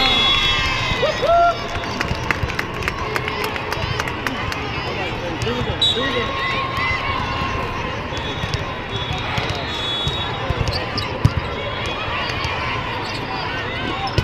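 Busy indoor volleyball hall with many courts: overlapping voices of players and spectators, sneaker squeaks and scattered ball smacks throughout. Steady high tones sound around the start and again about six seconds in.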